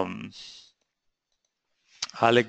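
The end of a man's spoken word, then a short breath, then about a second of near silence with a few faint clicks before he speaks again near the end.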